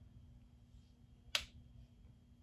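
A single sharp click about a second and a half in, from handling the eyeshadow palette and brush while picking up a shade, over a faint steady hum.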